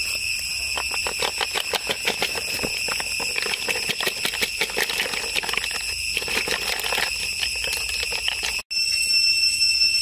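Cooked snail shells clattering as they are tipped from a pan onto a woven bamboo tray, a rapid run of clicks that stops near the end. Under it, a steady high-pitched insect drone.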